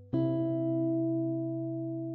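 Background music: a guitar chord struck once just after the start, ringing and slowly fading.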